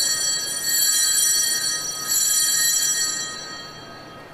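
Altar bells ringing at the elevation of the chalice during the consecration, rung again about a second in and about two seconds in, dying away near the end.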